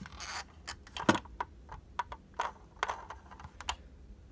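Irregular light clicks and scratches from fingers handling a 1/24 scale diecast car close to the microphone, gripping and turning its body and tire.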